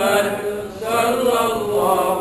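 Unaccompanied male chanting of Arabic selawat verses in honour of the Prophet, sung to a slow melody with long held, ornamented notes, pausing briefly a little before the middle.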